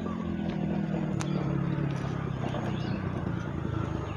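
A motorcycle engine running steadily, growing louder over the first second or so as it comes close, then holding.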